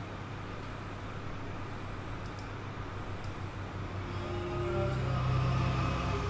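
A low steady hum with faint hiss. About four seconds in, sustained held notes of background music come in and grow louder.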